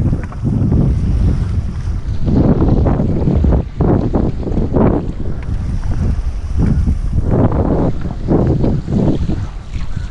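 Wind buffeting an action camera's microphone while a rider foils a stand-up paddleboard over choppy sea, with rushing water underneath. The rumble swells and drops in irregular gusts.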